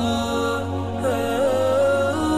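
Intro music: a wavering, sliding melodic line over a steady low drone.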